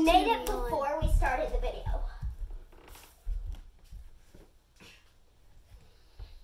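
A child's voice with no clear words for about the first two seconds. After it come dull low thuds and faint rustling and clicks as pillows are handled and stacked on an inflatable mat.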